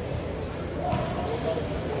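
Murmur of distant voices echoing in a gymnasium, with one sharp knock about a second in.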